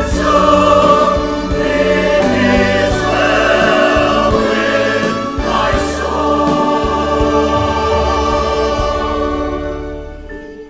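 Mixed church choir singing, full and sustained, getting quieter in the last second or so as the phrase closes.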